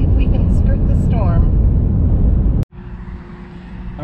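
Steady road and engine noise inside the cab of a pickup truck driving at highway speed, strongest in the low rumble. It cuts off abruptly about two and a half seconds in, leaving a much quieter steady hum with a faint held tone.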